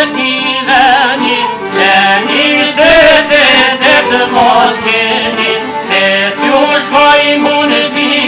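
Albanian folk song: a man singing a wavering, ornamented melody to plucked long-necked lutes, a çifteli and a sharki.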